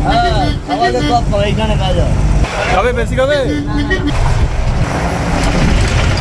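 Steady engine and road rumble of a moving bus, heard from inside the cabin, with people's voices over it.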